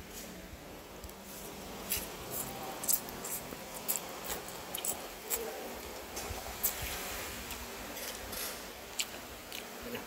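Quiet eating sounds: a mouthful of noodles being chewed, with a dozen or so short, scattered clicks and smacks.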